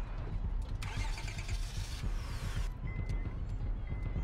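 A car's ignition key turned and the engine started: about two seconds of starter cranking and catching noise over a low engine rumble. A short high tone sounds twice near the end.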